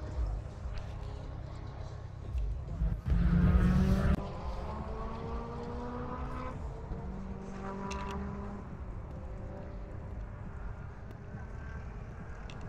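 A car engine revs sharply about three seconds in, then runs on with its pitch drifting slowly, and revs again more lightly around eight seconds in. A low rumble lies underneath throughout.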